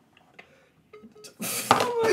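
Near quiet with a few faint clicks, then about one and a half seconds in a man bursts into loud, breathy laughter that he has been holding in.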